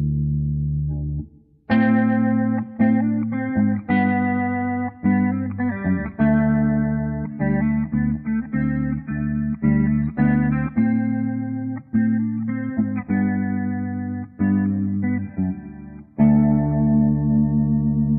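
Solo electric guitar playing an instrumental piece. A held chord dies away about a second and a half in, then a phrase of picked single notes and chords follows, and a new chord is struck and left ringing near the end.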